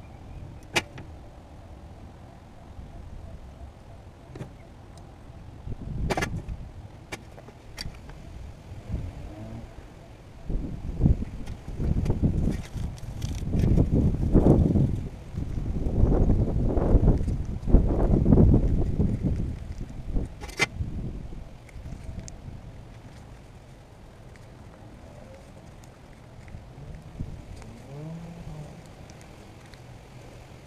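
Wind gusting on the microphone: a rough, low rumble that swells and buffets for about ten seconds in the middle and then fades, with a few sharp clicks of pliers working tie wire.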